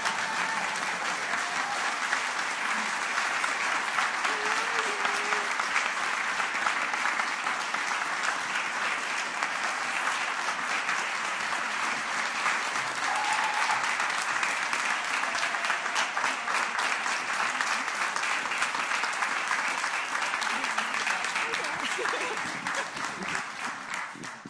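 A large audience applauding steadily, with a few voices calling out over the clapping; the applause tapers off near the end.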